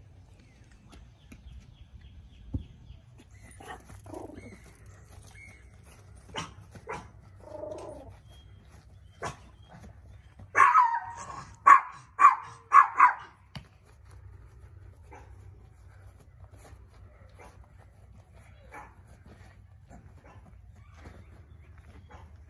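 A dog barking: a quick run of about five loud barks near the middle, with a few fainter sounds before it.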